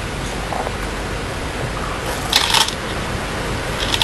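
Go stones being handled on the wooden board and in the stone bowl: a short clatter a little past halfway and another near the end as a hand reaches into the bowl of white stones, over a steady background hiss.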